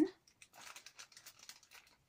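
A small clear plastic seed bag crinkling as it is handled, a quick irregular run of faint rustles.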